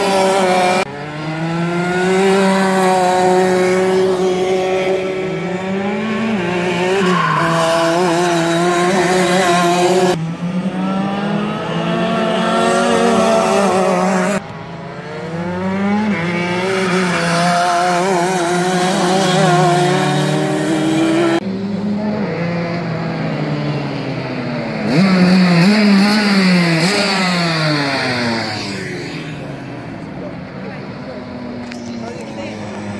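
Racing karts' Rotax DD2 125cc two-stroke engines, one or more at a time, screaming past, the pitch climbing and dropping over and over with throttle and braking through the corners. The sound changes abruptly several times, and near the end a kart's engine falls in pitch and fades as it goes away.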